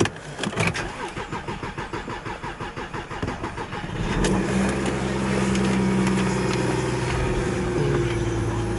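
Audi Q7 3.0 TDI V6 diesel being started, heard from the driver's seat: after a few clicks the starter cranks the engine in a steady rhythm for about three seconds. The engine catches about four seconds in and settles into a steady idle.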